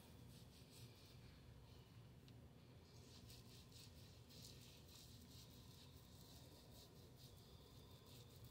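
Near silence, with faint, soft scratchy rubbing of hands working a thick shea body scrub over the skin to slough off dead skin.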